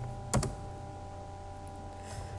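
A single keystroke on a computer keyboard about a third of a second in, over a faint steady hum.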